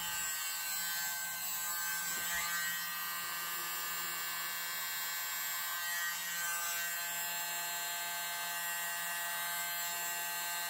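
Handheld mini air blower's small electric motor running steadily with an even hum, blowing air over wet acrylic paint to push it across the canvas in a Dutch pour.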